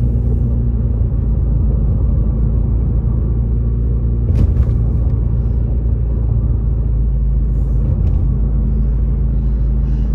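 Car driving on a winding paved road, heard from inside the cabin: a steady low rumble of engine and tyre noise, with one brief knock about four and a half seconds in.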